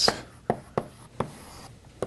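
Chalk writing on a blackboard: a few sharp taps as strokes land, then a short scratchy stroke near the end.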